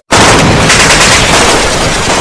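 Logo-intro sound effect: a loud burst of dense, gunfire-like noise that starts abruptly after a split-second gap and then slowly fades.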